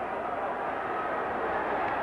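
Hockey arena crowd noise: a steady roar from the spectators, growing slightly louder.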